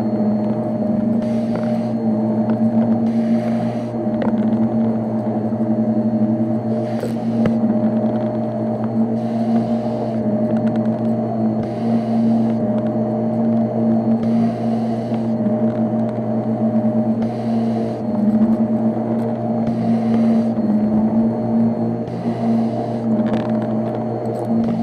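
Shark upright vacuum cleaner running on carpet: a steady motor hum with a swell of hissing airflow about every two seconds as it is pushed back and forth.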